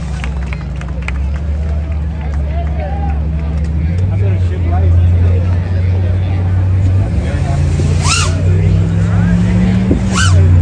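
A C10 pickup's engine held at high revs in a burnout, a steady low drone that steps up in pitch about four seconds in and shifts again around seven seconds. Crowd voices and shouts run over it.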